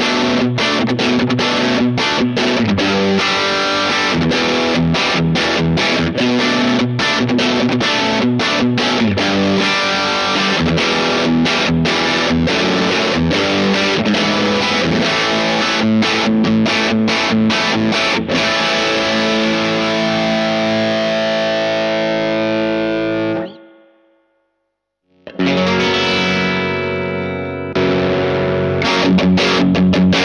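Electric guitar (Squier Telecaster) played through a Boss OD-3 overdrive pedal used as a boost into a Joyo Bantamp Atomic amp already breaking up, level full and gain down: mildly overdriven riffs and chords, ending with notes left ringing about 23 seconds in. After a second or so of silence, overdriven guitar playing starts again near the end.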